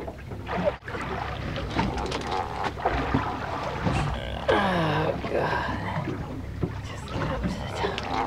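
Steady low hum of a fishing boat, with wind and water noise. About four and a half seconds in, a man lets out one drawn-out exclamation.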